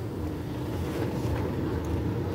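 Steady low rumble of a car driving slowly, engine and tyre noise heard from inside the cabin.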